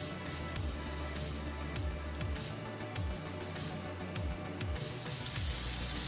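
Egg-and-mashed-aubergine patties sizzling in hot olive oil in a non-stick frying pan; the sizzle gets louder and brighter about five seconds in. Background music plays underneath.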